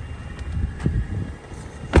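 A 2020 Mercedes-Benz E350 sedan's rear door shut with one solid thud near the end, after a few lighter knocks from handling the door.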